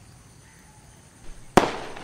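One sharp crack about one and a half seconds in, just after a softer knock, ringing on and fading over about half a second. Faint insects sound underneath.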